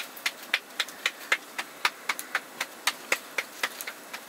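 Roti dough being slapped between the palms to flatten it by hand, a quick even patting of about four slaps a second that thins out near the end.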